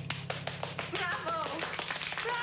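A small group of people clapping, with voices calling out "bravo" from about a second in, over a low held chord that is still sounding from the music.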